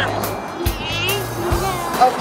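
Background music with a steady beat: drum hits under held bass notes and a wavering melody line.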